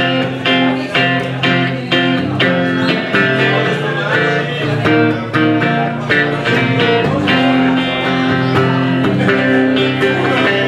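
Solo V-shaped electric guitar played through an amplifier, strumming chords in a steady blues-rock rhythm of about two strokes a second.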